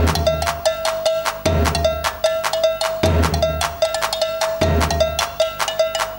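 Drum kit solo: a high pitched note struck in a fast, even pulse, over groups of bass drum hits that come back about every second and a half.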